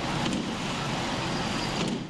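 Aerial ladder fire truck at work, its engine and pump running with a steady, loud rushing noise.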